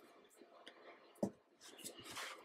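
Faint rustling of sticker paper being handled, with a soft tap about a second and a quarter in.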